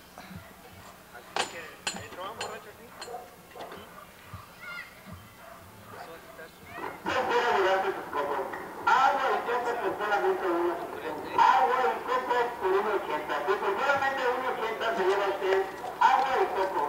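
A few sharp knocks about half a second apart between one and three seconds in, a machete cutting open a coconut, then people talking from about seven seconds in.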